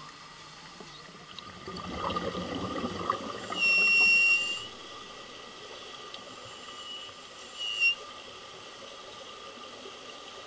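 Underwater pool sound during scuba play: a stretch of bubbling, rushing water noise, then a high, steady whistle-like tone lasting about a second, with a second, shorter tone a few seconds later.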